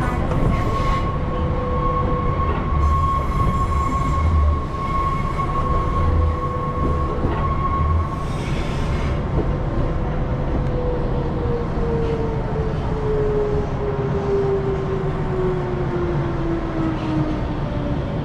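Electric train running on its rails, heard from on board: a steady rumble with a high squeal that stops about eight seconds in. From about ten seconds in, a whine falls steadily in pitch as the train slows.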